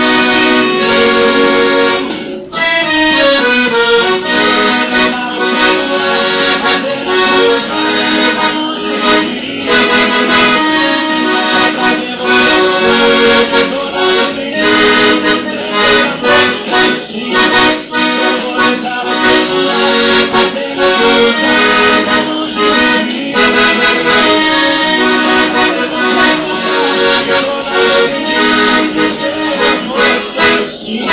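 Maestrina piano accordion played solo, with right-hand keyboard notes over left-hand bass-button accompaniment and continuously moving notes and chords. The playing breaks briefly about two and a half seconds in.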